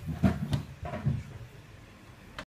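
A few knocks and bumps of things being handled and set down on a bench, about four in quick succession in the first second, then quieter.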